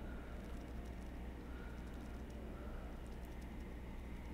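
Very faint, soft fingertip tapping on facial skin, from a gentle tapping facial massage on the forehead, over a steady low hum of room tone.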